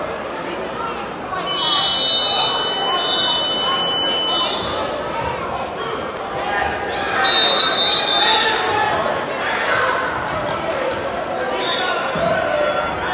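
Spectators' voices and chatter echoing through a large gymnasium. Steady high-pitched signal tones sound three times: for about three seconds starting a second and a half in, again about seven seconds in, and briefly at the very end.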